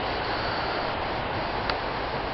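Steady rush of a fast, high river running nearby, with one brief click near the end.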